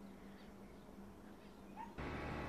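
Near silence: faint background hiss with a steady low hum.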